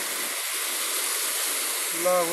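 Heavy storm rain driven by strong wind: a steady, unbroken rushing hiss.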